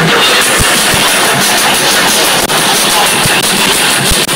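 Drum and bass DJ set playing loudly over a club sound system, the recording overloaded into a dense, harsh wash with no clear beat standing out.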